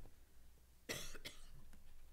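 A single cough about a second in, short and fairly faint against quiet room hum.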